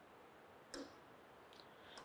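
Near silence with a faint short click about three-quarters of a second in and a fainter, higher tick near the end.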